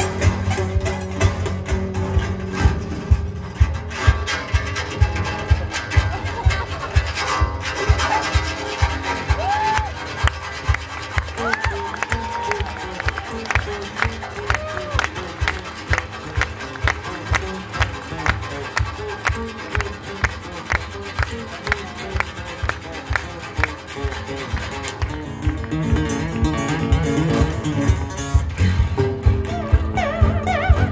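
Ovation acoustic guitar with a broken string played as an improvised percussive piece: a steady pulse of sharp taps, about two to three a second, over sustained low notes, with sliding notes around the middle.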